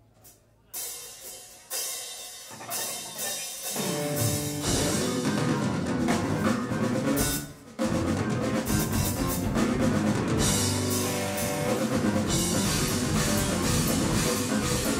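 Live rock band of drum kit, bass, electric guitar and keyboard starting a song: a few separate hits over near quiet, then the full band comes in about four and a half seconds in. A short break just before eight seconds, then they play on.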